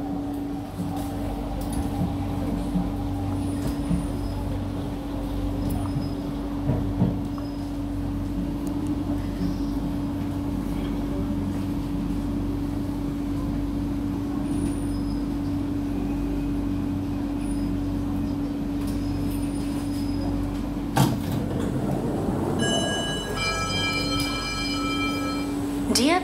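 Inside a Kawasaki–CRRC Sifang C151B metro car: a steady electrical hum over a low running rumble. About 21 seconds in there is a sharp knock, followed by a few seconds of steady high electronic tones.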